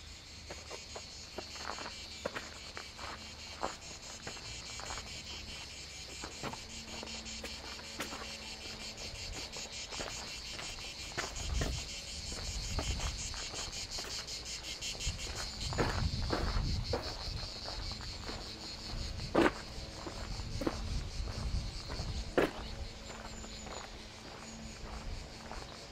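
Cicadas singing in a steady, finely pulsing high chorus, over footsteps on a dirt and gravel path, with a few sharper clicks near the end.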